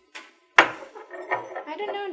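A sharp sudden sound about half a second in, then a person's voice without clear words.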